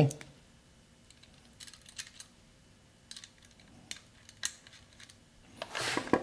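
A few scattered, faint metal clicks of a washer and nut being handled and fitted by hand onto an alternator mounting bolt. Speech starts again just before the end.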